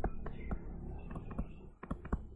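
Digital pen stylus tapping and sliding on its writing surface during handwriting, with a few sharp taps, mostly in the second half.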